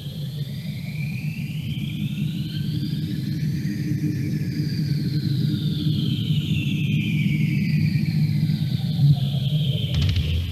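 Opening intro of a death/thrash metal demo recording: a low rumbling drone that slowly swells, with high whining tones that glide upward to a peak and then slide back down, before the guitars come in.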